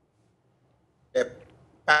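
A pause in a man's speech, nearly silent, then his voice resuming with a short syllable about a second in and another word starting near the end.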